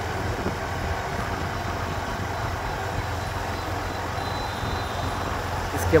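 Motorcycle engine running steadily with road and wind noise while riding.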